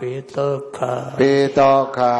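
An elderly Buddhist monk's voice reciting in a chanted, intoned cadence with long held notes, heard through a handheld microphone.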